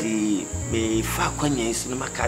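A man talking in Twi, with a steady high-pitched whine running underneath.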